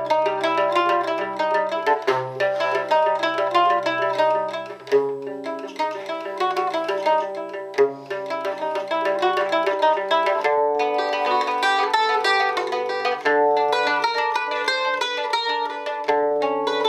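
Solo liuto cantabile, a five-course mandoloncello, played as a fast stream of arpeggiated plucked notes over a low ringing bass note that changes every few seconds.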